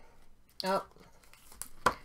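A stack of baseball trading cards set down on a tabletop, giving one sharp tap near the end, after light handling of the cards.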